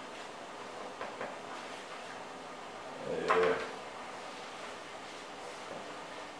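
Quiet kitchen handling while flour is added to a plastic mixing basin for bread dough, with a couple of light clicks about a second in and one louder knock a little after three seconds.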